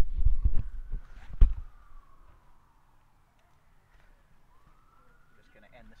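Several loud knocks and thumps of the microphone being handled in the first second and a half, then a faint distant siren wailing slowly down and back up.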